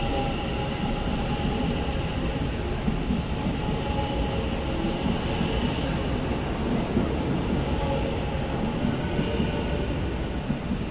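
Taiwan Railway EMU900 electric commuter train departing and running past along the platform of an underground station: a continuous rumble of wheels and running gear with a steady whine layered over it.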